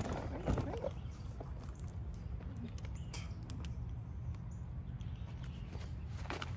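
Wind rumbling on the microphone, a steady low roar, with a few light clicks a little past the middle.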